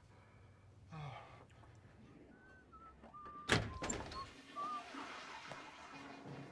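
A door bangs once about three and a half seconds in, a single heavy thunk with a little ringing after it. Faint short squeaks come just before and after it.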